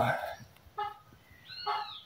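Great kiskadee fledgling calling twice: a short call just under a second in, and a longer call near the end that rises and falls in pitch.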